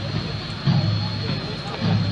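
A column of military trucks drives past with their engines running in a steady low drone, under an echoing public-address voice.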